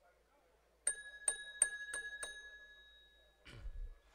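A small bell struck five times in quick succession, its ringing tone lingering after the last strike: the signal calling the chamber to order before the session is opened. A low bump on the microphone near the end.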